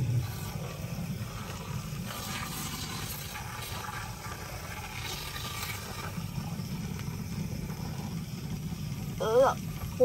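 Aerosol can of foam A/C coil cleaner spraying through its thin extension tube into the evaporator housing, a soft hiss over a low steady rumble. A short vocal sound comes near the end.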